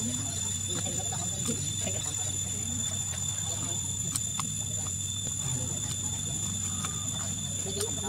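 Faint, indistinct human voices over a steady low hum and a thin, continuous high-pitched whine.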